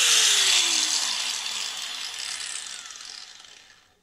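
Hikoki G13SN2 900 W angle grinder with a flap disc, switched off after a brief run and coasting down, its whine falling in pitch and fading out over about four seconds. It has no brake, so it takes a long time to stop.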